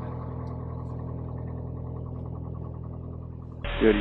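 Piper Cherokee PA-28-180's four-cylinder Lycoming engine idling steadily on the ground, heard inside the cabin. Near the end it gives way to a radio call.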